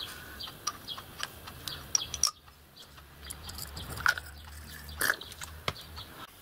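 Faint small clicks and light clinks as a brass whistle valve and a small glass jar of limescale remover are handled, over a low steady hum.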